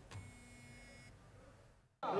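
Near silence, with a faint steady electronic tone that stops about a second in.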